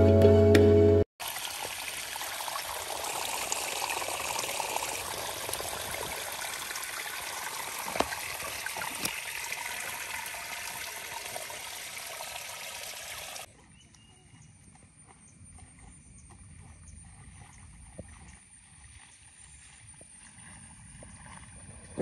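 Background music stops about a second in. A steady rush of running water, like a small stream, follows and cuts off abruptly a little past halfway, leaving faint outdoor ambience with a few small ticks.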